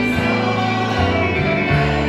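Live gospel music: electric and acoustic guitars playing under a small group of women singing together.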